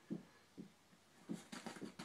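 Faint soft thumps and rustling from a kitten pouncing and scampering on a bed with a fuzzy pom-pom toy: a few separate light thuds, then a quick flurry of them near the end.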